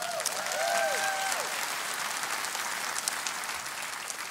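Audience applauding steadily, with a few brief calls from the crowd in the first second and a half.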